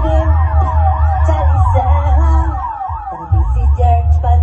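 Dub siren effect wailing up and down over and over, its repeats piling up in echo, laid over a reggae tune's heavy bass line. The bass cuts out briefly near three seconds in and drops back in.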